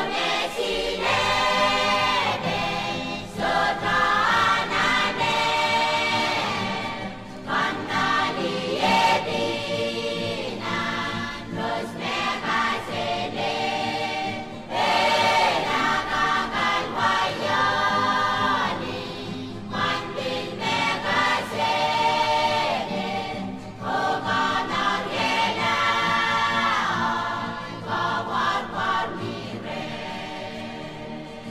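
A choir singing: background choral music in phrases a few seconds long, with brief dips between them.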